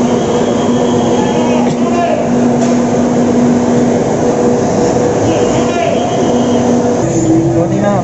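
Steady drone of an idling bus engine with the chatter of passengers crowding aboard. About seven seconds in, the hum changes to a different, lower pattern.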